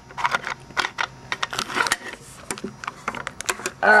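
Hands handling small hard objects, making irregular light clicks and taps, several a second.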